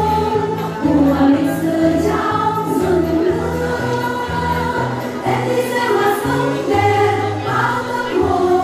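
A group of women singing a song together into microphones, over an instrumental accompaniment with a bass line that moves in steps.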